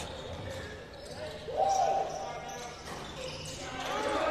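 Court sound of a live basketball game in a near-empty gym: a basketball dribbled on the hardwood floor, and a brief call from a player on the court about halfway through.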